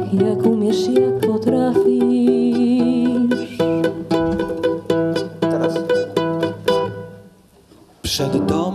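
Acoustic band playing an instrumental passage: quick plucked mandolin notes over guitar and held chords. The music fades down over the last second.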